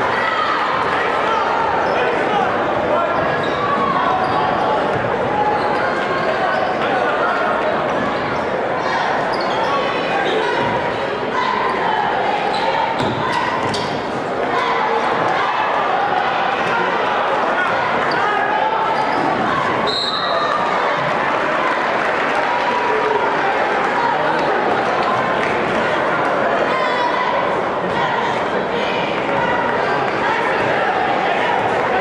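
Basketball game on a hardwood gym court: the ball bouncing on the floor under steady crowd noise and voices echoing through the hall. A brief high-pitched tone sounds about twenty seconds in.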